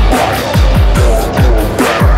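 Hip-hop instrumental beat with no rapping: deep kick drums that each drop in pitch, several a second, under a dense, busy layer of higher percussion.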